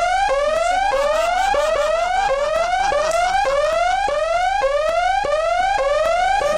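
An electronic whooping alarm: a rising sweep that climbs steadily, cuts off and starts again, about nine times in quick succession, roughly one and a half sweeps a second.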